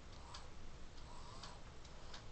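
Faint ticks, about one a second, over quiet room tone.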